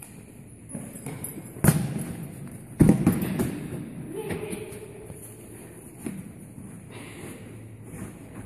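Two loud, dull thumps about a second apart, from a horse knocking a large rubber exercise ball, then quieter rustling in the sand.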